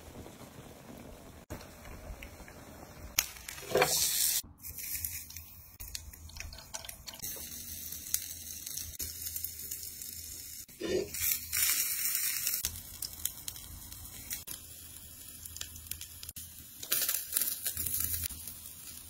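Food sizzling on a hot grill, with aluminium foil rustling and a few louder bursts of hissing about four seconds in, around eleven seconds and near the end.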